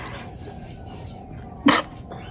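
A single short, sharp burst of breath from a person, like a cough, near the end, over quiet room tone.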